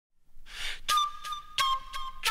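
Intro music led by a flute, starting a fraction of a second in with held notes and sharp note attacks.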